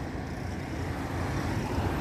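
Road traffic noise from a passing car, a steady rushing sound that grows gradually louder.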